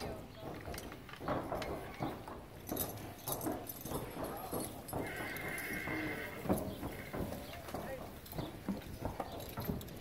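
Horses' hooves clopping and shifting on the barn's concrete apron, with a horse whinnying once for about a second, about halfway through.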